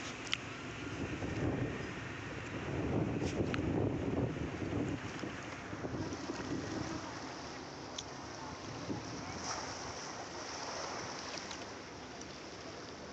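Wind buffeting the microphone over the wash of small waves on a sandy beach, strongest a few seconds in, with a few faint clicks.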